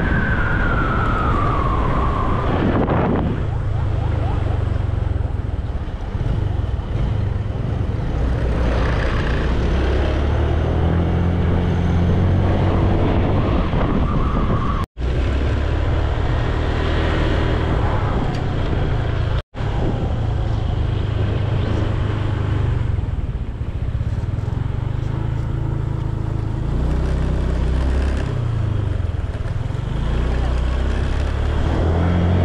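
Motor scooter engine running while riding, with wind rushing on the microphone. A falling tone sounds in the first two seconds, and the sound cuts out briefly twice near the middle.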